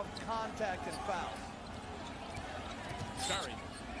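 Broadcast audio of an NBA game at low level: a basketball being dribbled on the hardwood court under arena crowd noise, with faint commentator speech near the start.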